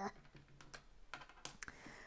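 Small plastic brick tiles clicking against a plastic baseplate as fingers press and handle them: a handful of faint, scattered light clicks.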